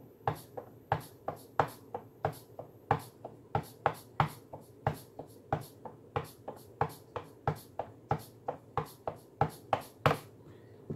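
A shaker sample triggered again and again from a Roland SP-555 velocity-sensitive pad, about three hits a second. Each hit comes out louder or softer depending on how hard the pad is struck.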